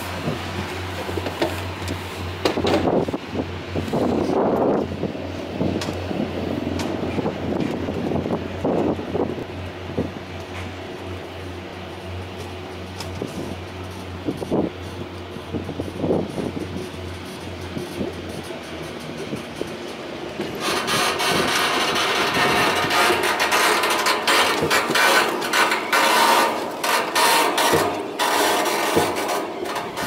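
Montaz Mautino basket lift heard from inside a moving basket: a steady low hum with scattered knocks and creaks. From about twenty seconds in comes a much louder clattering rattle with many rapid clacks as the basket runs past a tower's sheave assembly.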